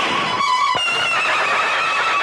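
A horse neighing over film soundtrack music.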